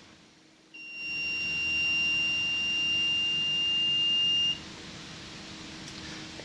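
Power inverter switched on with no battery connected, running only on the charge left in its capacitors: its buzzer gives one steady high beep lasting nearly four seconds, with a faint low hum underneath that carries on after the beep stops.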